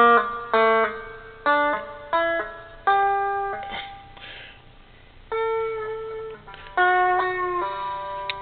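One-string diddley bow with a cast-metal body, its single string plucked through a run of about eight notes. Each note is at a different pitch, set by a finger stopping the string at a marked point, and each rings briefly before the next; there is a pause of about a second and a half near the middle.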